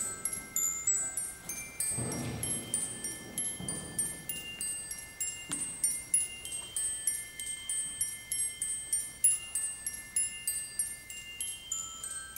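Handbell choir playing: a quick, even run of high brass handbell strikes, several a second, over long-held ringing lower bell tones.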